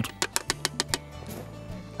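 A metal fork clinking and scraping against an enamel pie tin while chopped egg, bacon and onion are stirred together: a quick irregular run of sharp clicks in the first second or so, then softer. Background music plays underneath.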